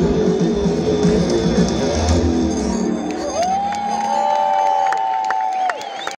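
Live rock band music with bass and drums, over crowd cheering. About three seconds in, the bass and drums drop out and a single long note rises and holds, then stops shortly before the end.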